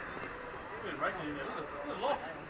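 Several voices calling out and talking at once, indistinct, from players and onlookers at a rugby league scrum, with a louder call about a second in.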